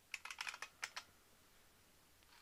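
Faint computer keyboard typing: about half a dozen quick keystrokes, stopping about a second in.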